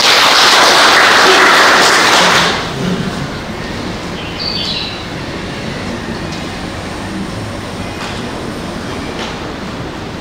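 Audience applauding for about two and a half seconds, then a lower, steady level of hall noise.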